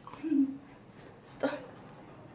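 A dog gives one short, low whimper near the start, followed by a couple of faint clicks later on.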